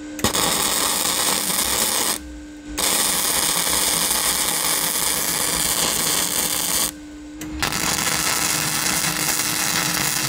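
Flux-core MIG welding arc from a Vevor MIG-200D3 on dirty steel diamond plate, crackling steadily in three runs. The arc stops briefly about two seconds in and again about seven seconds in.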